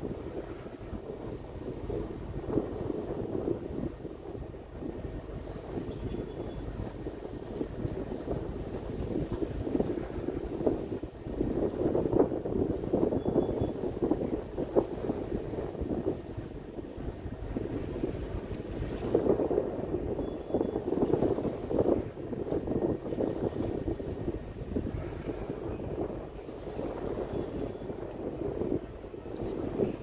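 Wind gusting on the microphone on the deck of the passenger ship KM Leuser under way, over a steady rush of sea and ship noise. The gusts swell and ease, strongest about midway and again some seconds later.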